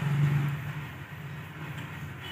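Water boiling in a small cup heated by a homemade electric heater, a steady bubbling hiss. A low electrical hum under it fades about half a second in.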